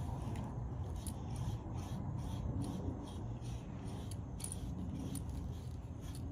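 Short, irregular scratchy strokes of a grooming tool working through a dog's coat, with the metal tag on her collar jingling lightly as she is brushed.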